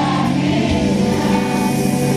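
Live pop-rock band music with a large crowd singing along together in chorus.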